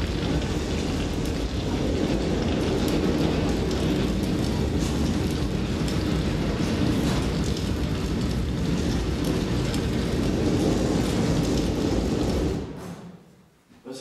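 A dense, steady rumbling wash of noise from a theatre sound design, with no clear pitched part, that fades out quickly about thirteen seconds in.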